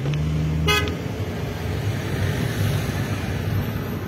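A vehicle horn gives a low, steady honk lasting about a second, with a brief higher beep near its end. Steady engine and road rumble from a moving car follows.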